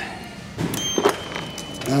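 Two sharp clicks, then a steady high-pitched electronic whine lasting under a second, as the Yamaha V-Max 1400's ignition and dashboard are switched on.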